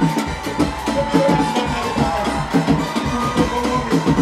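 Live band playing up-tempo dance music: hand drums and drum kit keep an even fast beat, about four strikes a second, under bass guitar and keyboard.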